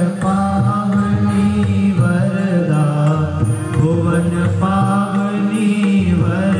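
Devotional Hindu aarti hymn, a chanted melody sung in phrases of about a second each over sustained low notes.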